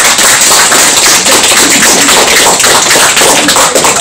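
Audience applauding, many hands clapping loudly and steadily.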